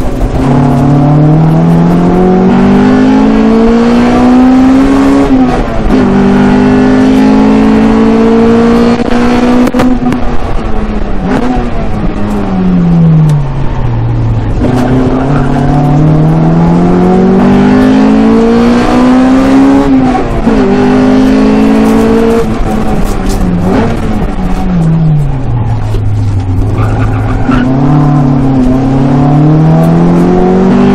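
A Honda Integra Type R DC2's 1.8-litre four-cylinder VTEC engine, heard from inside the cabin, revving hard through a lap. Its pitch climbs and drops sharply at each upshift, then twice falls away slowly when slowing for corners before climbing again.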